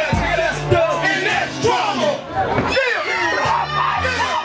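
Hip hop backing beat with deep bass and kick drum played live through a PA, with rappers and the crowd shouting and whooping over it. The beat drops out briefly past the middle and comes back near the end.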